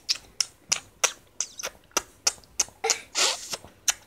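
A quick run of short, sharp clicks, about three a second, with a longer hissy burst about three seconds in.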